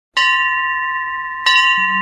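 A bell struck twice, about a second and a half apart, each strike ringing on in clear sustained tones. A low drone note comes in under it near the end.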